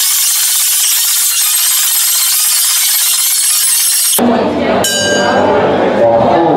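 A loud, steady, high-pitched hiss cuts off suddenly about four seconds in, giving way to crowd noise in the arena. About a second later a ring bell is struck once and rings on, signalling a round.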